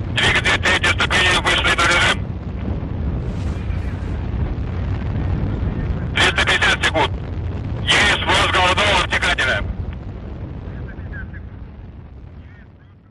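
Russian launch-control voice calls heard over a radio loop in three short bursts, over a steady low rocket-engine rumble that fades out near the end.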